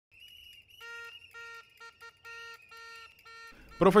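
Faint protest noise: a whistle blown in one long shrill note while a plastic horn honks seven times in a chant-like rhythm of long and short blasts. A man's narrating voice cuts in just before the end.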